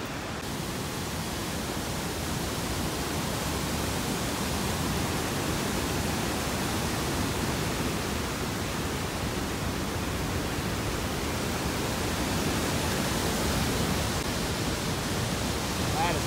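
Steady rush of a waterfall, Rocky Falls, slowly growing louder as it is approached.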